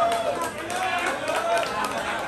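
Indistinct voices of several people talking in a group, no single clear speaker.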